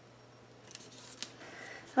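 Faint rustling of hands pressing and sliding over cardstock paper, beginning about a second in, with one light tick partway through.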